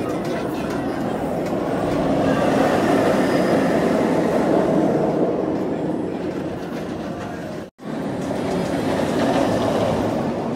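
Steel floorless roller coaster train (Bolliger & Mabillard) running along its track with a steady, heavy rumble that swells a few seconds in. The sound drops out for an instant about three-quarters of the way through, then carries on.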